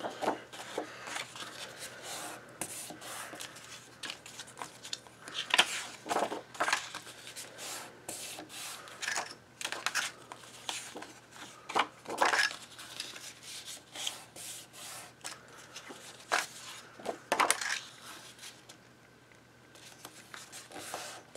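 Sheets of black cardstock being handled on a table: short irregular rustles, slides and light taps as the panels are shuffled and laid out.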